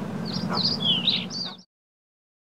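Birds chirping in quick, curved calls over a low, steady background hum, all cutting off suddenly about a second and a half in.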